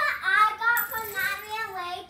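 A young girl singing a wordless tune, her voice sliding up and down in long held notes.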